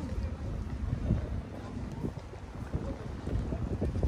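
Wind buffeting the microphone, a low, uneven rumble.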